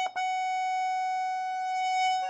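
Pancordion Baton piano accordion: a quick run of treble notes ends with a short re-struck note, then a single high treble note is held steadily.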